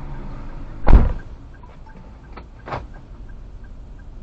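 A car door shutting with a heavy thump about a second in, then a lighter knock near three seconds, over a low steady engine hum.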